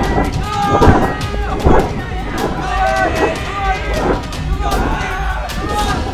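Several voices shouting and crying out with no clear words, over a low rumble and a rapid scatter of sharp clicks.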